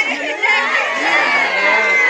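A crowd of schoolchildren shouting and crying out together, many high voices overlapping with some long held wails, over the students' emotional pleas to their teacher not to leave.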